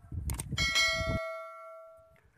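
A click sound effect followed by a bright bell chime from a subscribe-button and notification-bell animation; the chime rings out and slowly fades. Under the first second, wind rumbles on the microphone and then cuts off abruptly.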